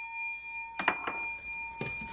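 Fading metallic ring of a large metal lottery scratcher coin after it has been struck, with a sharp tap about a second in and a fainter one near the end.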